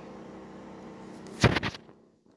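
A faint steady room hum, then a short loud rustling thump about one and a half seconds in: a handheld phone being handled and swung down, rubbing on its microphone.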